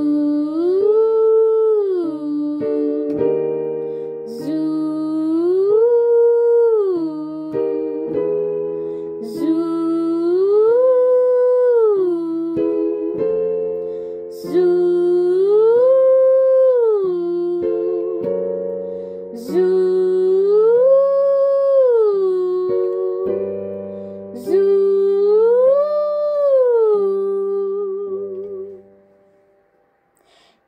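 A singer doing a 'zoo' vocal warm-up, sliding up a fifth and back down (1-5-1) six times over sustained piano chords. Each slide starts a step higher than the one before. The last note wavers briefly before fading out near the end.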